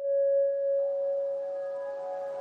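Background ambient music starting: one held, ringing tone, joined by several higher held tones about a second in.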